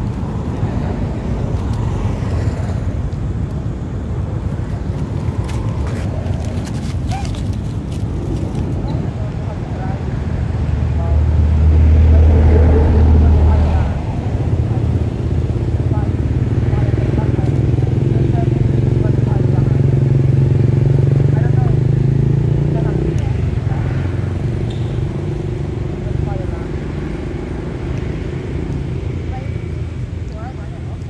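A motor vehicle engine running close by: a low hum that grows louder from about ten seconds in, rises slowly in pitch, then drops away suddenly about 23 seconds in.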